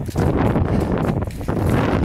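Wind buffeting a phone's microphone in a dense low rumble, mixed with rustling of grass and handling noise as someone scrambles up a steep grassy bank.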